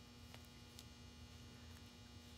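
Near silence: a steady low electrical hum, with a couple of faint ticks in the first second.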